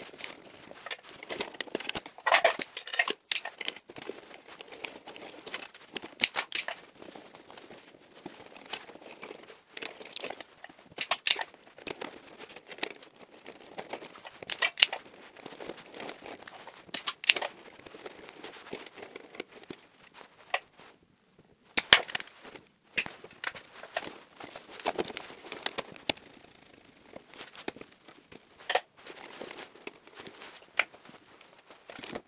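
Insulated electrical wires being bent and routed by hand inside a plastic distribution board: irregular rustling and crinkling with scattered sharp clicks and taps. The loudest click comes about 22 seconds in.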